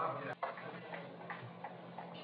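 A man's word ends, then a single sharp click about a third of a second in, with a brief dropout in the sound. After it comes a faint, steady background hum with a few soft, scattered ticks.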